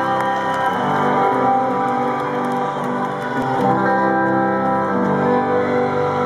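Rock band playing live: held guitar chords ringing out and changing a few times, with no vocals.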